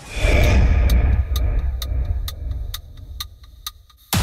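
Trailer sound design: a deep boom that rumbles and fades away over a few seconds, with a steady clock-like ticking, about two ticks a second, starting about a second in.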